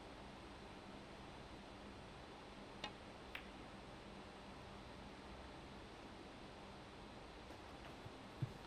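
Two sharp snooker-ball clicks about half a second apart: the cue tip striking the cue ball, then the cue ball hitting the pink, over a quiet, steady room hush.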